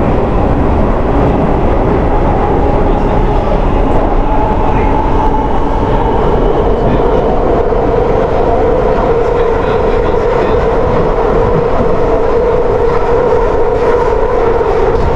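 London Underground train running through a tunnel, heard from inside the carriage: a loud, steady rumble with a whining tone that grows stronger in the second half.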